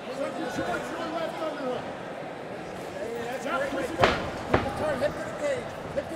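Two sharp impacts about half a second apart, two-thirds of the way in, from the fighters grappling in a clinch against the chain-link cage, over a background of crowd and corner voices.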